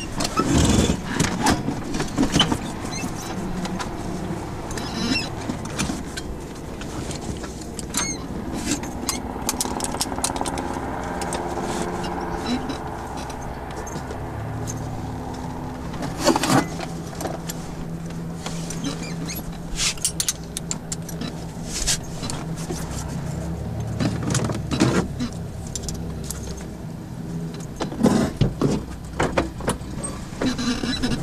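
Handling noises inside a parked light aircraft's cabin, engine off: scattered clicks, knocks and rustling as cockpit fittings such as the sun visor and door are touched, over a steady low hum.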